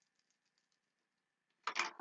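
Mostly very quiet, with faint light clicks as small bottles are handled, then a short burst of a woman's voice near the end.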